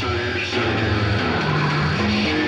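Dense, noisy rock music with guitar, held bass notes and a sung voice ("she said") at the start.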